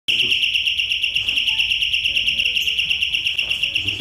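Electric doorbell ringing nonstop: one high, trilling tone that pulses about eight times a second.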